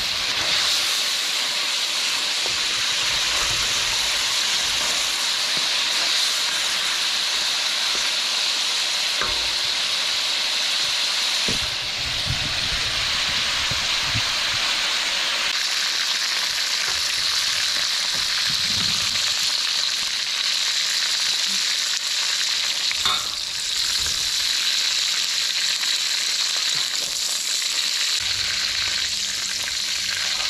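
Baby octopus sizzling and frying in a steel wok with a steady hiss, stirred now and then with a bamboo spatula that gives a few brief scrapes and knocks.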